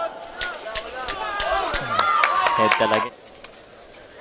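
Arena sound of a boxing bout: raised, shouting voices, one call held for about a second in the middle, over several sharp smacks of gloves landing in the first half. It quietens near the end.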